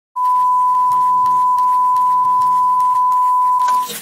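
A single steady electronic beep at one unchanging pitch, held for almost four seconds. It cuts off into a brief burst of hiss.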